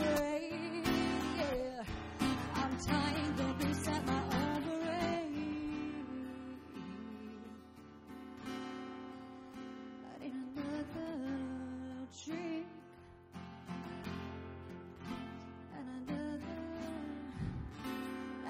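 Acoustic guitar strummed under a woman's singing voice, live through a microphone. The passage softens through the middle and builds again near the end.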